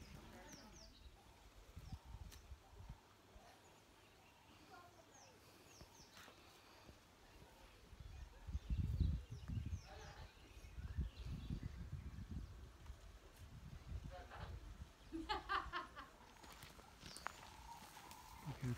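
Quiet outdoor ambience with low rumbling surges and brief high chirps scattered through it; a faint voice speaks about three seconds before the end.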